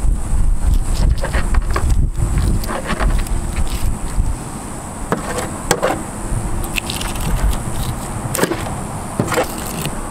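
Serrated knife sawing through a redfish's large, tough scales and along its backbone: irregular scraping and crackling strokes as the blade catches on the scales. A steady low rumble runs underneath.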